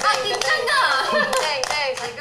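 Several young women's voices chanting and laughing, with hand claps.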